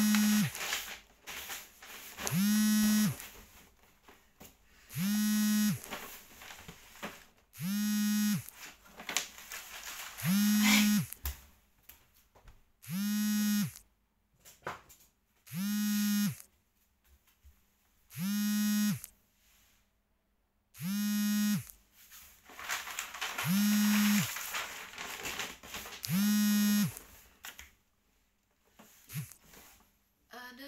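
A low buzzing tone, each under a second long, repeating at a steady beat about every two and a half seconds, about eleven times, with faint rustling between.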